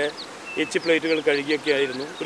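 An insect buzzing close by, with a man talking more quietly underneath.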